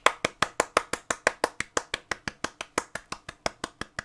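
One person clapping hands quickly and steadily, about seven claps a second, growing a little softer near the end.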